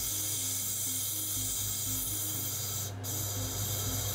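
Steady hiss of a silicone tube burning fast in a stream of nitrous oxide blown through it, breaking off briefly about three seconds in.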